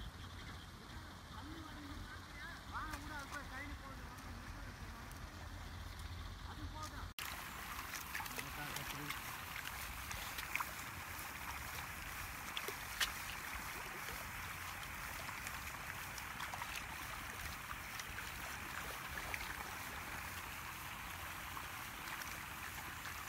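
Faint voices over a low steady background for the first seven seconds; then, after a cut, a steady splashy hiss of muddy paddy water stirred by hands working rice seedlings, with a few sharp clicks.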